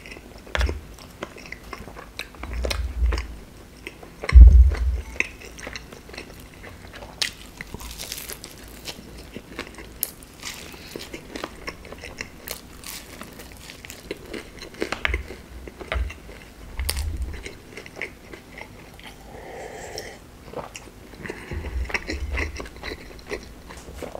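Close-miked chewing and biting of a fried chebureki pastry: crisp crust crackling and wet mouth sounds in many short clicks throughout, with several dull low thumps, the loudest about four seconds in.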